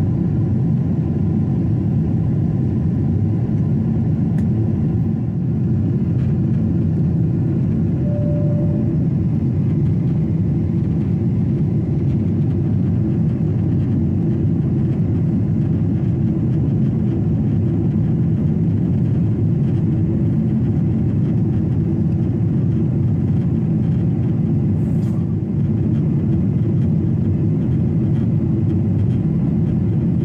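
Steady low cabin noise of a Boeing 747 in flight: its jet engines and the rushing air heard from inside the cabin at a window seat.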